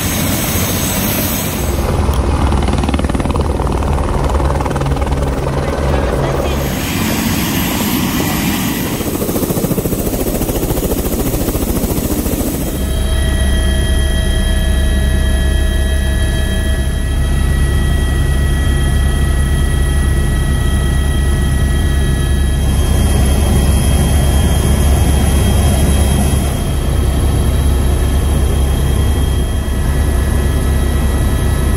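Helicopter in flight heard from inside the cabin: a steady, loud low drone from the rotor and engine. After about 13 seconds a set of steady whining tones runs on top of it.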